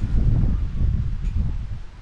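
Wind buffeting the microphone: an uneven, gusting low rumble that eases toward the end.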